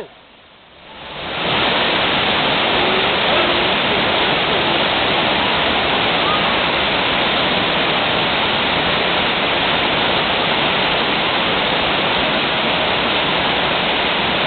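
Waterfall close by, a loud steady rush of falling water that swells up about a second in and then holds without change.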